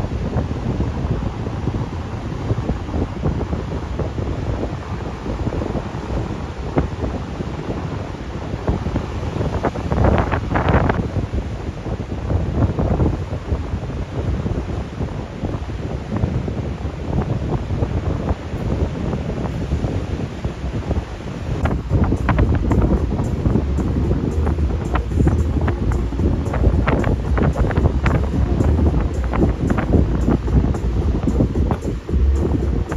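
Wind gusting on the microphone over the wash of Atlantic surf breaking on volcanic rocks, the gusts growing stronger about two-thirds of the way through.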